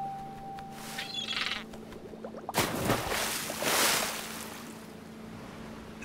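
The last piano note fades out, a short bird squawk sounds about a second in, then splashing water rushes for about two seconds.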